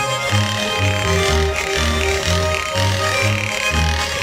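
Swiss ländler music played on several Schwyzerörgeli (Swiss diatonic button accordions) over a plucked double bass, with a steady bouncing bass line. Chlefeli (pairs of wooden clapper boards) rattle in fast runs over the tune.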